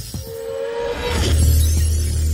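Logo-reveal sound design: a short held tone, then a deep bass hit about a second in that swells and holds under a glassy, shattering shimmer.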